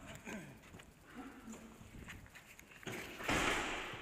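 Footsteps and handling noise from a body-worn camera carried through a doorway. About three seconds in there is a loud, short rush of rustling.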